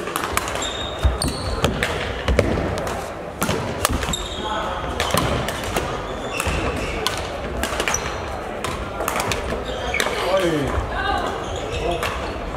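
Badminton rackets striking shuttlecocks, sharp clicks from several courts at once, with short high squeaks of court shoes on the hall floor and background voices, all echoing in a large sports hall.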